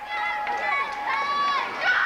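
Spectators shouting and cheering in high-pitched voices, several calls overlapping and held for a moment each.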